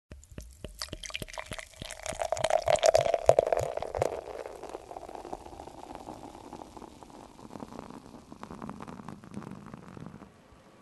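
Beer poured into a glass and fizzing: a pouring rush that swells about two to four seconds in, over constant crackling of bubbles, then fades to a softer fizz.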